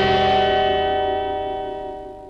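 A bell-like chime struck once and ringing on, slowly fading away. It is the sting of a TV channel's bumper marking the start of a commercial break.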